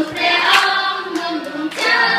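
A group of children singing together in unison, with hand claps cutting through the song.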